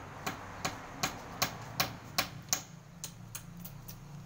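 Rapid light tapping, about three sharp taps a second, of a hand tool on a concrete-block wall as a mason sets the blocks; the taps fade in the last second. A faint low steady hum runs beneath.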